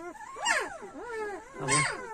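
Newborn Kangal puppies, two or three days old, squealing and whimpering in several short high-pitched cries that rise and fall in pitch.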